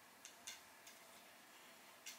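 Near silence: room tone, with a few very faint ticks in the first second.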